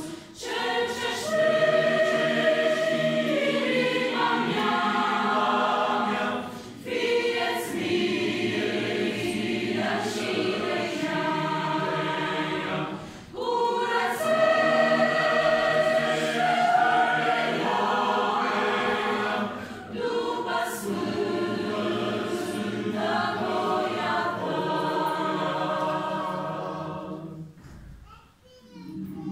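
A choir singing a sacred song in parts, with long held chords in phrases separated by brief breaths. The last chord fades away near the end.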